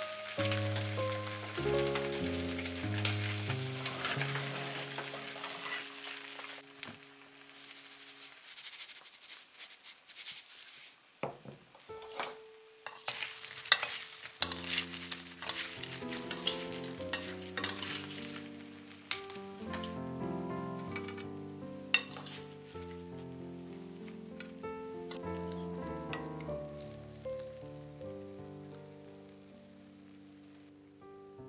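Confit duck legs sizzling as they fry in a nonstick frying pan over medium heat, loudest over the first several seconds. In the middle come a run of sharp clinks and clicks as a utensil tosses fried potato slices in a ceramic bowl. Background music plays throughout.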